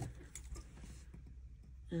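Faint light taps and rustles of a clear plastic ruler being shifted into place on paper on a tabletop.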